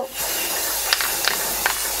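Aerosol spray can of clear protective gloss lacquer spraying in one steady hiss.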